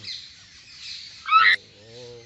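A short, loud, high chirp a little over a second in, then a man's voice holding one low, steady chanted note.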